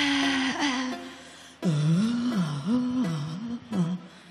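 A singer's wordless vocal into a microphone in a live pop performance. One note is held for about a second, and after a brief gap the voice swoops down and up about three times before stopping just before the end.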